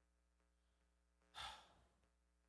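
Near silence, broken about one and a half seconds in by a single short breathy exhale, a man's sigh picked up by a handheld microphone.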